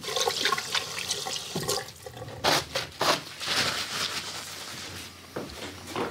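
Tap water running into a sink as hands are washed, rushing steadily for most of the time with a few short clicks and knocks, then easing off near the end.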